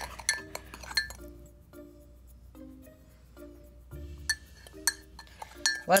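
Metal spoon clinking and scraping against a ceramic mug as dry mug-cake powders are stirred together, a quick irregular run of small clinks. Light background music notes play underneath.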